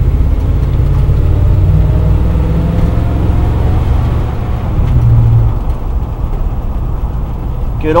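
Chevrolet big-block V8 of a 1971 Chevy pickup running as the truck drives, heard from inside the cab, with a deep steady drone that swells briefly twice, near the start and about five seconds in. The engine is not yet warm.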